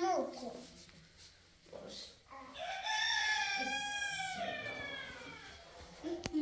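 A rooster crowing once in the middle, a single long call of about two and a half seconds that holds its pitch and then falls away at the end. Just before it, at the very start, comes a brief falling vocal sound from a small child.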